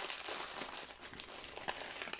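Packaging being handled and crinkling, with quick irregular crackles and rustles.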